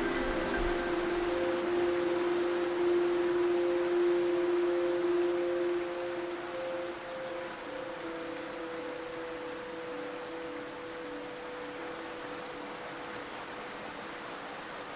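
Ambient electronic music: a few sustained synth tones held over a soft bed of hiss. The music drops in level about halfway through, leaving one held tone and the hiss.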